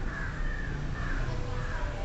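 A crow cawing, about three calls in a row, over a steady low background rumble.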